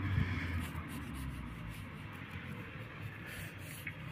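A stick of charcoal scratching across sketchbook paper in uneven strokes.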